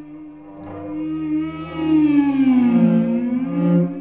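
Cello and electric guitar playing held, sustained tones in a contemporary piece. About halfway through the music swells louder as one pitch slides down and back up.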